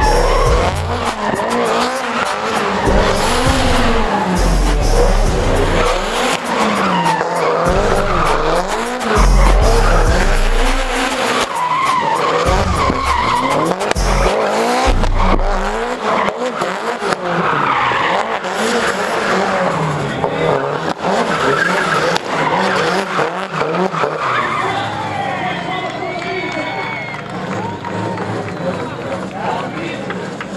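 Drift car spinning on the track: its engine revs rise and fall again and again at high revs, with tyres squealing and skidding as it slides through its own smoke. The revving eases somewhat near the end.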